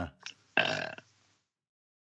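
A man's brief wordless vocal sound, a hesitation or breathy noise lasting about half a second, follows the tail of his speech. Then the sound cuts to dead silence for the last half second or so.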